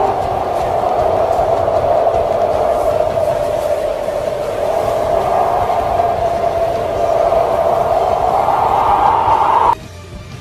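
Tornado wind sound effect: a loud, steady rush of whirling wind with a whistling tone that wavers and rises slightly toward the end, then cuts off suddenly just before the end.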